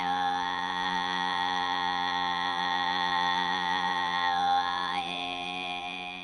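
A woman throat singing: a steady low drone with a high, whistle-like overtone held above it. About five seconds in, the overtone dips and then jumps back up higher.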